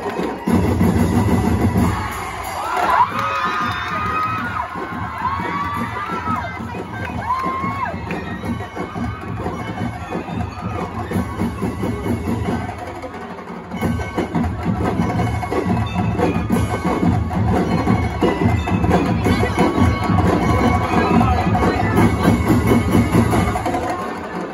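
Drum and lyre corps playing live: drums keeping a fast, dense beat with bell lyres ringing over them, and a few voices calling out a few seconds in. The band drops back briefly about thirteen seconds in, then comes back in fuller and louder.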